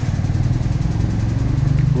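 An engine running steadily nearby, a low rumble with a fast, even pulse.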